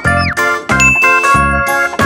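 Cartoon sound effects over children's background music: a short falling tone near the start, then a bright ding that rings for about a second, marking the on-screen right and wrong answer marks.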